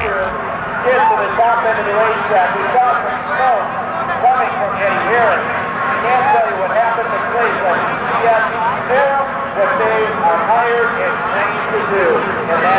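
Men's voices talking throughout, too unclear to make out, over a steady low hum.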